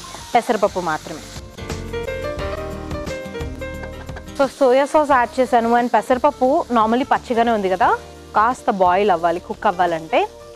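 Moong dal and chopped vegetables frying in a nonstick pan, a steady sizzle with a spatula stirring them. A short music cue cuts across it for about three seconds, starting about a second and a half in.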